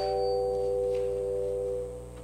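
Instrumental music: a sustained chord on a keyboard instrument, held steady and released near the end.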